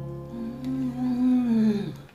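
Soft background acoustic guitar music, with a long closed-mouth "mmm" hum over it that holds and then falls in pitch near the end: the sound of someone savouring a mouthful of food.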